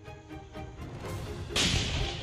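Rocket-propelled grenade launcher fired once about a second and a half in: a sudden loud blast that trails off over about half a second, over background music.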